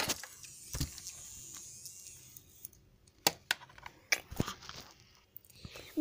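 Scattered light clicks and knocks from small plastic toy figures being handled and set down, a few near the start and a quick cluster a little past the middle.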